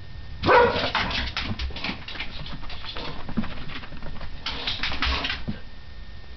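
Two dogs playing: a loud bark about half a second in, then scuffling with short clicks and more whining and barking, and another burst of noisy play near the five-second mark.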